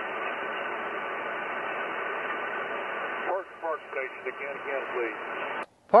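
Yaesu FTDX10 transceiver's speaker playing single-sideband receiver audio: steady band hiss with a few faint steady tones, and a weak station's voice coming through the noise about three seconds in. The receiver audio cuts off suddenly near the end as the microphone is keyed.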